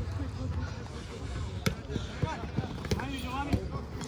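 Soccer ball being kicked and bouncing on artificial turf: a string of sharp thuds starting about a second and a half in, with players shouting in the background.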